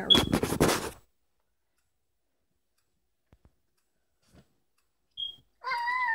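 Cloth rustling and flapping for about a second as a shirt is shaken out and spread flat, then silence. Near the end comes a short high-pitched vocal call that falls in pitch.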